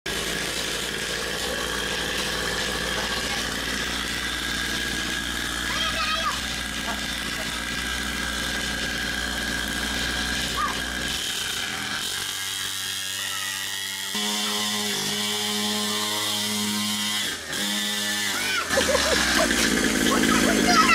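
Small engine of a mini pocket dirt bike running with a buzzy drone. From about twelve seconds in the sound turns steadier, with evenly held pitches.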